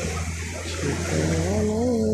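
A voice holds a long, drawn-out 'oh' call in the second half, rising in pitch, over a steady hiss and low hum.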